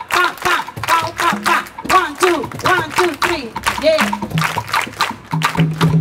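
Hands clapping the Cuban rumba clap pattern in a steady run of sharp strokes, with a voice calling short 'pa' syllables on the beat. Near the end a held low tone comes in.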